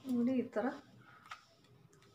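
A woman's short spoken sound, then two faint light clicks of a small metal spoon against a glass bowl as sandalwood face-pack paste is mixed.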